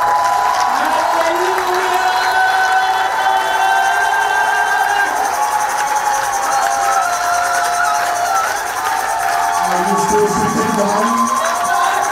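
Church congregation breaking out into loud cheering and shouting, starting suddenly and going on throughout, with many long high-pitched cries held over one another and lower men's shouts joining near the end.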